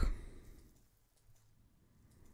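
A short breathy exhale, like a sigh, just after speaking, fading out within about half a second. Then a quiet room with a few faint computer mouse clicks.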